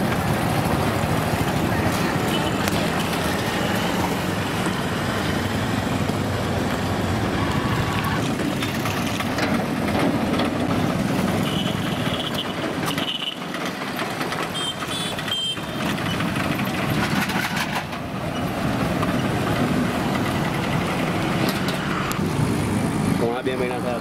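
Street traffic: motorcycles and other vehicles running past in a steady engine-and-road rumble, with a few brief high beeps near the middle.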